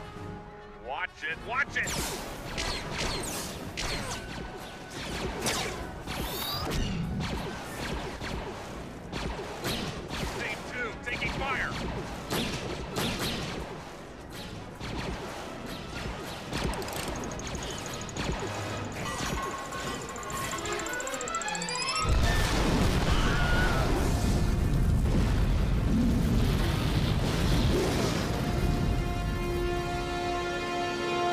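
Film soundtrack of music and sound effects: a dense run of sharp bangs and impacts over a dramatic score, then, about two-thirds of the way through, a sudden louder, deep rumbling passage.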